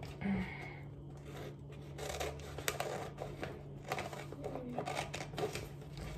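Scissors cutting through gift-wrapping paper: a run of short, irregular snips and paper rustles.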